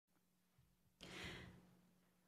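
Near silence with a faint low hum, broken about a second in by one short, soft breath from the speaker into a pulpit microphone.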